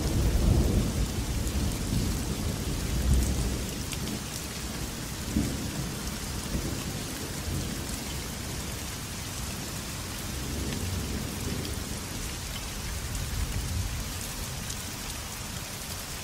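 Steady light rain with a low rumble of thunder that is loudest at the start and fades away over the first few seconds.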